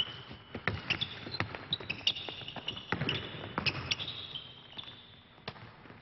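A basketball bouncing and being passed around during a half-court play, a string of sharp knocks, with short high squeaks of sneakers on the court floor.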